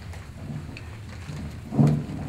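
Clip-on lavalier microphone being handled and fastened to a shirt: low rumbling and fabric rustle picked up directly by the mic, with a louder bump near the end.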